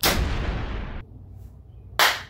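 A loud blast about a second long that cuts off abruptly, set off on the crossbow's test firing; then a single sharp hand clap near the end.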